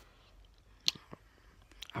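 Quiet room with a few brief, sharp clicks, the loudest about a second in.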